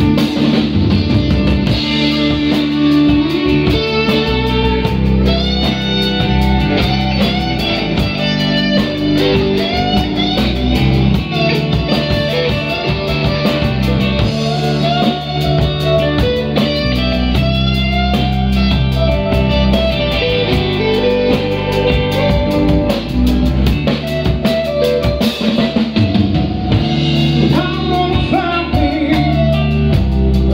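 Live rock band playing an instrumental passage: electric guitars, with a lead line of bent notes, over bass guitar and drum kit.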